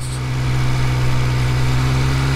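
Triumph Speed Triple 1200 RS's three-cylinder engine running at steady low revs while the bike rolls slowly, heard from the rider's seat over a steady rush of wind and road noise.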